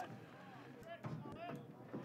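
Faint open-air ballpark ambience, with a distant voice calling out briefly near the middle.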